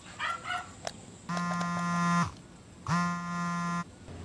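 Mobile phone buzzing twice on vibrate, each buzz lasting about a second with a short gap between: an incoming call.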